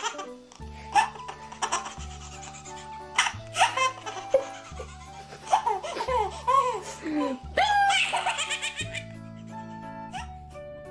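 A baby laughing in several bursts of high, gleeful giggles over background music with a steady low beat.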